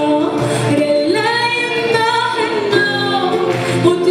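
A woman singing an Amazigh Rif song (izran) live on stage, holding long notes that bend slightly, over instrumental accompaniment.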